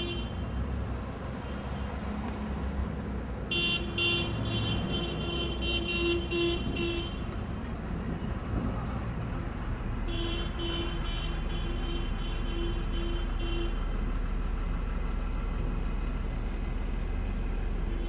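A horn or electronic alarm sounding in rapid, evenly repeated pulses, in two stretches of a few seconds each, over steady outdoor street and vehicle rumble.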